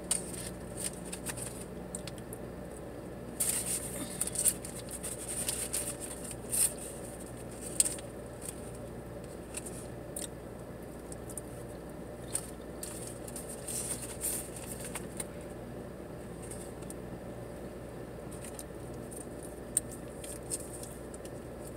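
Paper food wrapper crinkling and rustling as it is handled, in short bursts, over a steady low hum.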